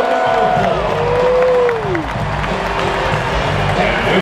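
Basketball arena crowd noise with music playing over the sound system: held notes give way to one note that swells and slides down about two seconds in.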